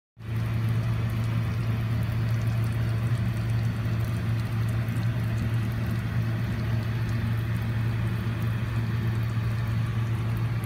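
Steady low mechanical hum with a fine hiss and faint crackling over it, holding at an even level after it cuts in just at the start.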